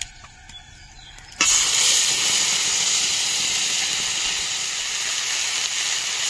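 Ginger and cumin paste dropped into hot oil with whole spices in a metal wok: a loud sizzle starts suddenly about one and a half seconds in and carries on steadily as the paste is stirred.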